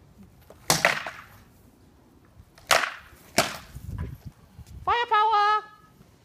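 Rattan sword blows cracking sharply against a shield and armour, about four strikes in quick bouts, followed about five seconds in by a short high-pitched shout.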